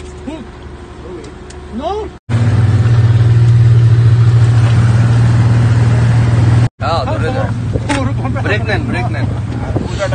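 Twin Yamaha 225 outboard motors running with the boat underway, a low steady drone that turns much louder for about four seconds from about two seconds in. Voices talk over it in the last few seconds.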